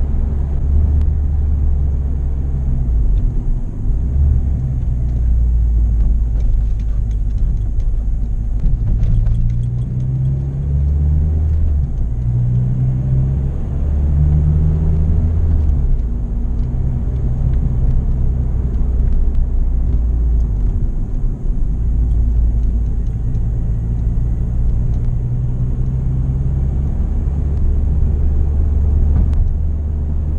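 Honda Civic Type R EP3's 2.0-litre four-cylinder engine through an HKS aftermarket exhaust, droning loudly as heard from inside the cabin while driving at low speed. The pitch of the drone rises and falls with throttle and gear changes, briefly dropping away twice.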